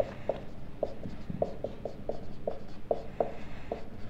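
Marker pen writing on a whiteboard: short, irregular pen strokes, two or three a second, as letters and exponents are written.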